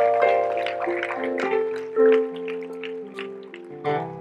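Soft keyboard music: held chords that shift every half second or so, growing quieter toward the end.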